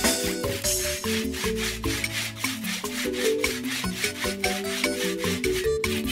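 A steel machete blade scraped back and forth along a concrete step to sharpen it, a rubbing, rasping sound over background music with held notes and a steady beat.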